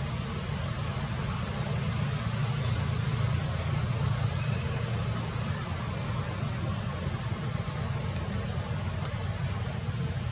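Steady outdoor background noise: a low rumble with a faint hiss above it, and no distinct events.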